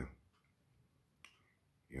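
Near-silent pause in a man's talking, with one short faint click a little after a second in; his voice trails off at the start and returns at the very end.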